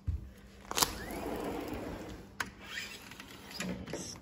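A door onto a deck is unlatched and opened: a sharp click a little under a second in, a rushing, scraping sound for about a second and a half, a second sharp click, then softer scrapes and knocks.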